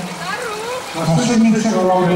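Speech only: a man's voice calling out the swimmers lane by lane, Czech names and lane numbers.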